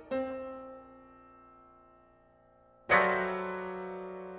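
Solo piano playing sparse chords: a chord struck just after the start dies away over about two seconds, then a louder chord near the end rings on.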